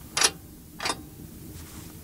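Two short metallic clacks, about two thirds of a second apart, as the door of a miniature potbelly stove is worked by hand.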